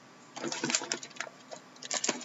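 Rustling and crinkling as shrink-wrapped card boxes are handled on a wooden table, starting about half a second in and lasting about half a second, followed by a few light clicks.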